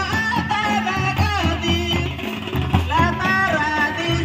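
Ho folk dance music: voices singing over a steady drum beat.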